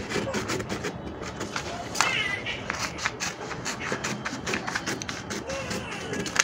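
Scissors snipping through a paper sewing pattern: a run of short, crisp cuts. A brief high-pitched sound comes about two seconds in.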